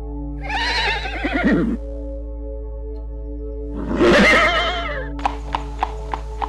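Two equine whinnies, each about a second and a half long with a wavering pitch that falls at the end, over soft background music with steady held tones. Near the end comes a run of sharp clicks, about four a second.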